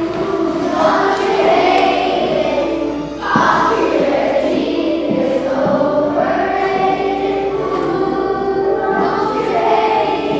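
A group of children singing a song together in chorus, with a short break about three seconds in before they go on.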